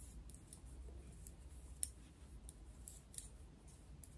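Faint, irregular clicking of metal double-pointed knitting needles as stitches are worked, the sharpest click a little under two seconds in.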